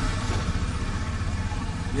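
A motor vehicle engine runs steadily, a low rumble under general street noise.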